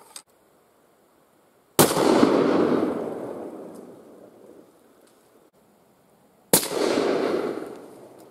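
Two hunting-rifle shots about five seconds apart, each a sharp crack followed by a long rolling echo that fades over about two seconds. The first is fired without a suppressor and the second with the suppressor fitted, and the second is only a little softer.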